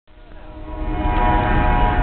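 Dodge 1500 pickup doing a burnout: engine held at high revs with its rear tyres spinning and squealing, a steady pitched wail over a low rumble that grows louder through the first second.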